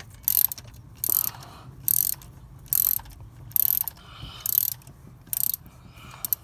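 Socket ratchet clicking in about seven short bursts, a little under a second apart: the ratchet's strokes backing out a tight spark plug that would not turn by hand.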